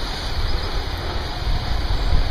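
Steady rushing background noise with no distinct sounds.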